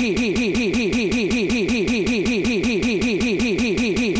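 Electronic music track caught in a quarter-beat loop in the edjing DJ app, one short fragment repeating about eight times a second as a rapid stutter, with a steady high tone over it.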